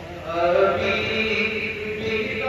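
A man chanting a naat, an unaccompanied devotional recitation, into a microphone. His voice swells about half a second in and holds long, wavering melodic notes.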